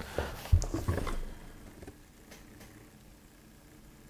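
Low thuds and clothing rustle from a person shifting and leaning forward, picked up by a clip-on lapel microphone, in the first second. A few faint ticks follow.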